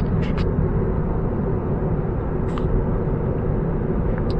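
Steady road and tyre noise inside the cabin of a moving car, with a brief click about halfway through.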